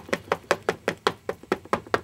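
Ink pad tapped repeatedly onto a large stamp to ink it, quick even taps about five a second.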